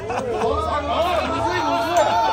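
People talking: voices chattering, with no other clear sound standing out.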